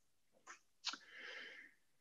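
A pause in a lecturer's speech, close to silence, with a faint mouth click and a short, quiet intake of breath.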